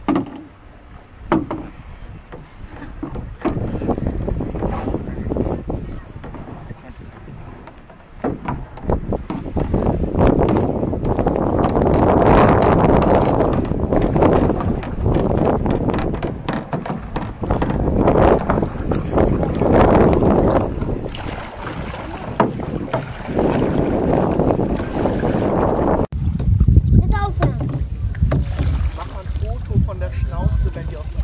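Wind on the microphone and water lapping around canoes on open water, with faint, indistinct voices. The noise grows much louder about ten seconds in and changes abruptly near the end.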